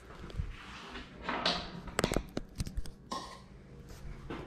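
Handling noises from hands and a small tool working on a deer mount: soft rubbing, then a quick run of light clicks and taps about two seconds in.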